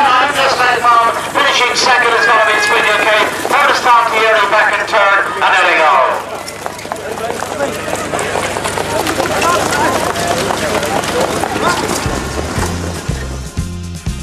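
Loud, excited shouting for the first six seconds or so, then a quieter stretch of background noise, and music with a steady beat starting near the end.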